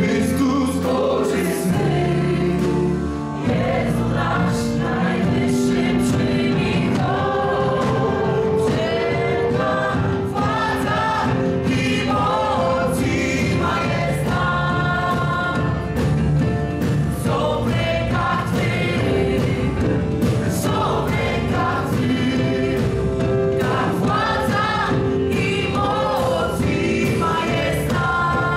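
A live worship song, with a band of keyboard, electric guitar and drums and many voices singing together.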